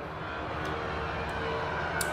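Steady room hum with a couple of faint ticks from a folding knife being handled, and a sharper click at the very end as the blade drops on its freshly threadlocked pivot.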